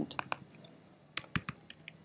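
Computer keyboard keystrokes: three quick key presses at the start, then several more single, spaced key presses from about a second in, as a scale value is typed in.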